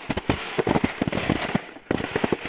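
Trampled snow crunching and crackling in a rapid, irregular run of sharp clicks, as something moves over it.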